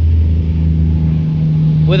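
A loud, steady low mechanical hum that holds one pitch without a break, with a man's voice starting right at the end.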